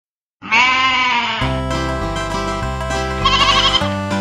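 A wavering, bleating sheep call opens. About a second and a half in, an upbeat nursery-rhyme instrumental intro starts with a bouncing bass line, and a second, shorter and higher bleat sounds over the music near the end.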